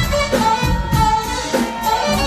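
Live band playing: a saxophone carries the melody in long held notes over electric bass guitar and drum kit.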